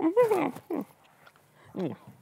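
A man's voice: one drawn-out vocal sound that rises and then falls in pitch, followed by two short voiced bursts that sound like laughter.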